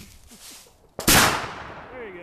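A single shot from a black powder muzzleloading rifle about a second in, sharp and loud, with its report ringing off through the woods for most of a second.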